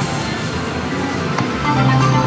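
Electronic music and chiming tones from a Kitty Glitter video slot machine while its reels spin. The sound grows louder near the end.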